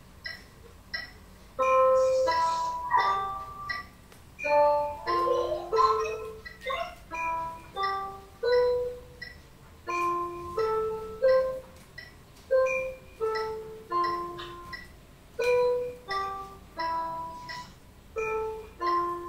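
Electronic keyboard playing a slow, simple single-note melody, one note at a time, each note ringing briefly before the next, about one to two notes a second, heard through a video call's audio. The notes begin after a few faint ticks in the first second and a half.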